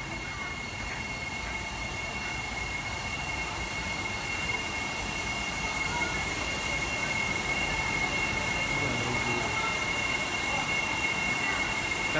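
Steady machine-like background drone with two constant high whining tones, getting slightly louder in the second half, with faint voices in the background.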